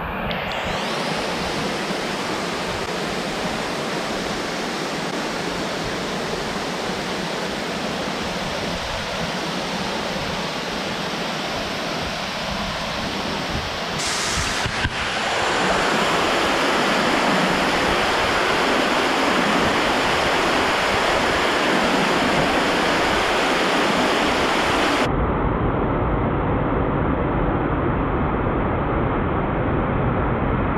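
Waterfall rushing over rock ledges, a steady noise of falling water. It grows louder about halfway through and turns duller near the end, when the higher sounds drop away.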